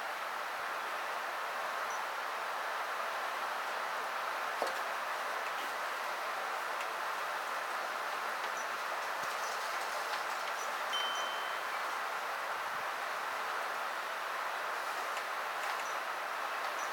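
Steady background hiss with a few faint, brief high-pitched tinkles scattered through it, a single sharp click about four and a half seconds in, and a short high tone about eleven seconds in.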